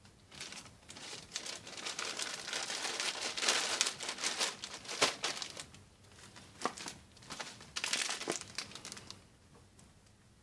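Clear plastic bags crinkling and rustling as a garment is handled and packed, with a few sharp crackles. The sound is loudest in the middle and dies away near the end.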